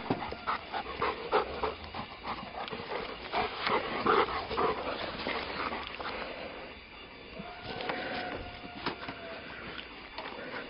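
A chocolate Lab–shepherd mix dog panting after running fetch, with scattered short knocks and clicks.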